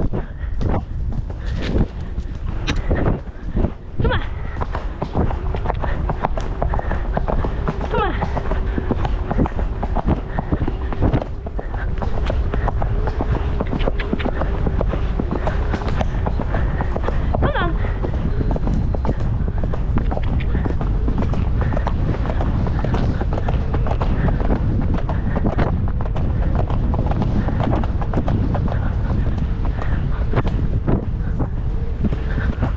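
Horse cantering cross-country, its hoofbeats thudding on a dirt and grass track, with wind rushing over a helmet-mounted microphone. From about twelve seconds in, the wind noise becomes steadier and louder.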